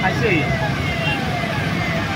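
Steady low rumble of an idling truck engine, with road traffic and faint voices behind it.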